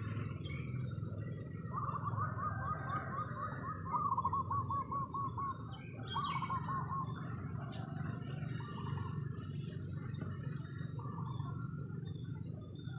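A wild bird calling in short phrases of quick repeated notes, several phrases a couple of seconds apart, the loudest about four seconds in, over a steady low hum.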